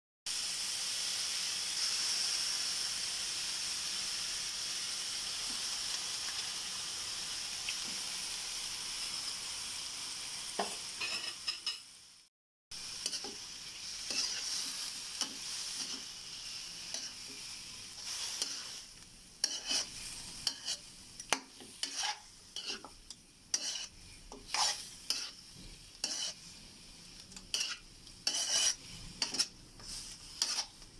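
Raw chicken pieces sizzling in hot oil in a wok with garlic, onion and ginger: a steady sizzle at first, broken by a short gap a little before the middle. From about twenty seconds in, a utensil stirring the chicken scrapes and knocks against the wok in irregular strokes over a quieter sizzle.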